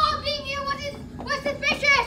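Children's high-pitched voices calling out in drawn-out, wordless sounds, with a short break about a second in.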